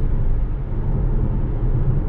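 Steady low road and tyre rumble heard inside the cabin of a 2015 Tesla Model S, an electric car, cruising at 60 mph.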